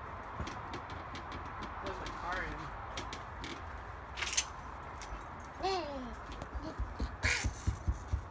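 A toddler's brief wordless vocal sounds: a faint one about two seconds in and a short falling "ah" a little past the middle, over a quiet background. There is a sharp clink near the middle, a short scrape-like burst near the end, and low thumps in the last second or two.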